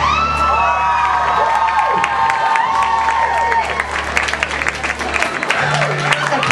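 Walk-on music playing while the audience cheers, with clapping building from about two seconds in.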